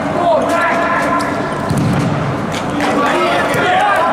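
A futsal ball being kicked and bouncing on a hard indoor court, several sharp knocks, under players' voices and shouts echoing in a sports hall.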